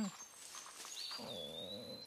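A faint low growl, with a thin high whistling tone that starts about a second in, dips slightly and then holds steady.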